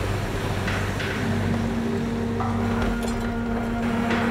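Land Rover 4x4 driving through deep water: engine running under a steady rush of splashing water, with steady held tones coming in about a second in.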